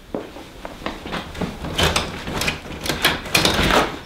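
A front door being worked open: the handle and latch rattle and click in a run of irregular knocks that bunch up in the second half. The door is not opening smoothly.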